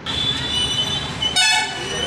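Street traffic noise with a vehicle horn tooting once, briefly, about one and a half seconds in, over a faint steady high-pitched tone.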